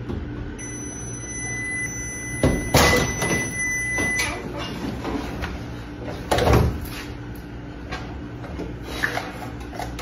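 An over-the-range microwave's door is pulled open, with loud clunks and clatter from the door latch and handle a couple of seconds in, and its thin steady high whine cuts off shortly after. A further knock comes past the middle as a bottle is taken from inside the microwave.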